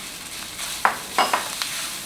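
Udon noodles and mushrooms sizzling steadily in a hot frying pan while a wooden spatula stirs them, with a few short scraping knocks of the spatula against the pan in the second half.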